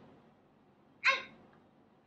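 A young girl's high voice says one short word about a second in; the rest is quiet room tone.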